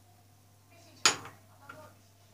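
A sharp clink of dishes about a second in, ringing briefly, followed by a smaller clink just over half a second later.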